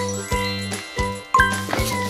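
A tinkling, twinkly chime sound effect over children's background music, with a second bright chime hit about a second and a half in.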